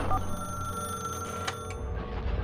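Electronic telephone-style tones in a TV programme's logo jingle. A short two-note dial beep opens it, then a steady electronic ring tone is held, ending with two sharp clicks about a second and a half in.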